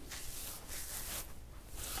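Faint rustling of hands rubbing beard balm into a full beard, palms and fingers brushing through the hair.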